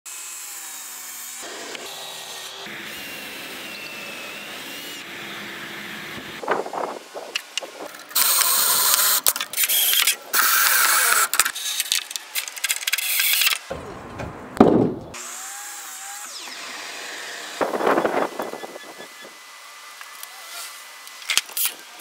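Power drill running in three loud bursts of about a second and a half each, driving pocket-hole screws into the wooden barstool frame. Shorter bursts and knocks of wood handling come later.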